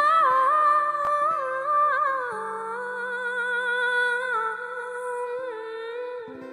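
A woman's voice singing a wordless, held melody with a wavering pitch, over soft sustained acoustic guitar chords. The sung line steps down to a lower note a little over two seconds in.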